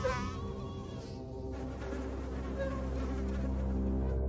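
A mosquito's buzzing whine, wavering in pitch and strongest at the start, over a low steady drone.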